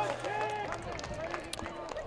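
Faint, overlapping voices of soccer players and spectators calling out across the field, with a few light clicks.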